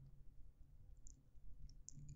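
Near silence: faint low room hum, with a few tiny clicks in the second half.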